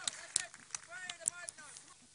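Scattered shouts and calls from players and spectators at a Gaelic football match, short overlapping voices heard from a distance, with a few sharp clicks mixed in.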